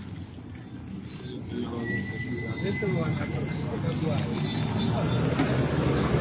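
A low vehicle hum that grows steadily louder, with faint voices in the background.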